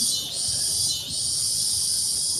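Insects chorusing in the trees: a loud, steady, high buzzing that dips briefly twice.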